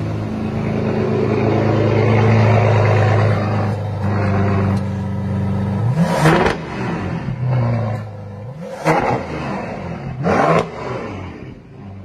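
Bentley Bentayga Mansory edition's engine idling steadily, then revved in three quick blips about six, nine and ten and a half seconds in.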